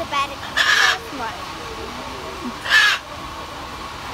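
A parrot squawking twice: a harsh call about half a second in and a louder, shorter one near three seconds in.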